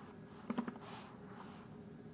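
Computer keyboard being typed on: a short cluster of quick keystrokes about half a second in, then a few fainter taps.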